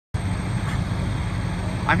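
Fire engine's engine idling at the scene: a steady low hum.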